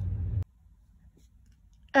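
Low recording rumble that stops abruptly with a click about half a second in, at a cut in the recording, followed by near silence.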